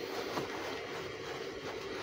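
Soft, steady rustling of crisp organdy and satin fabric being handled as a lined ruffle piece is turned right side out through a small opening in the seam.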